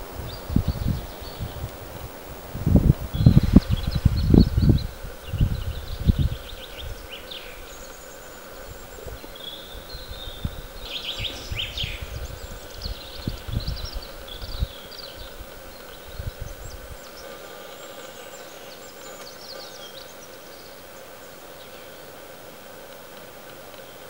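Outdoor ambience: wind gusts buffeting the microphone, strongest in the first six seconds and dying away by about seventeen seconds, with small birds chirping and singing in the background.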